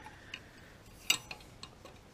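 A few light clicks and knocks of metal as the oil pickup tube is pushed and worked into the oil pump's O-ring bore on an LS engine. The sharpest click comes about a second in, with smaller ticks around it.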